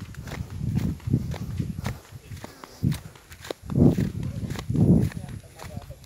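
Footsteps of a person walking along a dirt footpath, with short crunchy ticks and irregular low rumbling thuds, loudest near four and five seconds.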